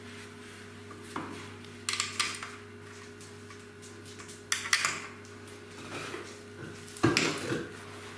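Short metallic clinks and knocks of steel corner brackets and fittings being handled against a pine table frame, in several brief bursts, the loudest near the end, over a faint steady hum.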